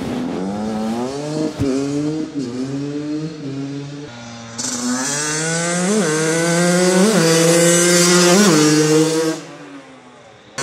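Yamaha YZ85 two-stroke dirt bike, freshly rebuilt top end, ridden toward the camera: the engine climbs in pitch and drops back several times as it pulls through the gears, then grows louder with three quick throttle blips in the second half before falling away near the end.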